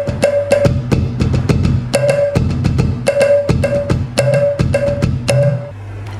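Electronic percussion pad (octapad) playing a rhythm of sharp drum and wood-block-like hits, with a short mid-pitched note repeated over a bass line. It drops away shortly before the end.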